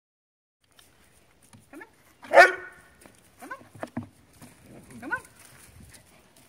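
Puppy barking once loudly about two seconds in, then giving a few shorter yelps that rise in pitch, with a couple of knocks on wood in between.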